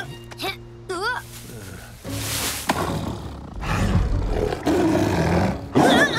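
A sabre-toothed cat roaring and snarling, a cartoon sound effect that starts about two seconds in and grows louder toward the end, over background music.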